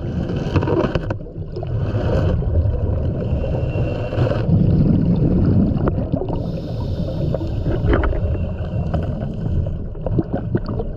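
Underwater sound picked up through a diving camera's housing: a steady low rumble of moving water, broken several times by stretches of bubbling hiss typical of a scuba diver's regulator breathing.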